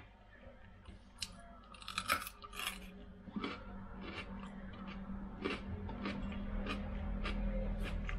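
A raw potato bitten into and chewed: a few loud, crisp crunches about two seconds in, then steady crunching, about two crunches a second, as the raw flesh is chewed.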